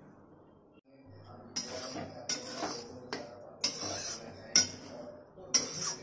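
A metal spoon scraping and clinking against a metal kadhai as semolina is stirred while it dry-roasts. The strokes are irregular, roughly one every half second to a second, starting about a second and a half in, with the loudest about four and a half seconds in.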